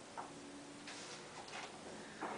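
Faint, short scratches and light taps of a quill pen on paper at a wooden table, a few of them about a second in.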